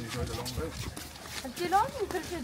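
Indistinct voices of people talking, not clear enough to make out words.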